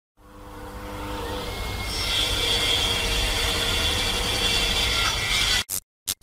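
Synthetic sound effect for an animated logo intro: a dense, grinding noise that swells up over about two seconds and holds, then cuts off suddenly near the end and stutters in three or four short bursts.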